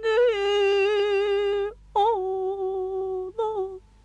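A woman singing long, wordless held notes with no accompaniment, in three phrases, the last one short.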